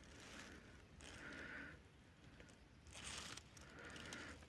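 Near silence, with a few faint, brief noises.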